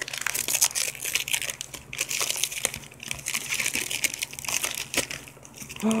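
Gift wrapping paper being crumpled and pulled open by hand, a continuous run of small irregular crackles as the present is unwrapped.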